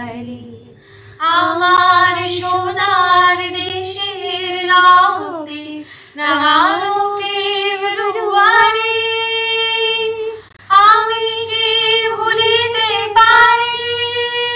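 Female voices singing a Bengali song in phrases of long held notes that glide between pitches. The phrases break off briefly about a second in, about six seconds in, and again past the ten-second mark.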